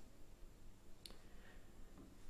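Near silence with a single faint computer-mouse click about a second in.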